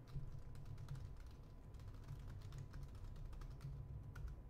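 Typing on a computer keyboard: faint, irregular key clicks over a low steady hum.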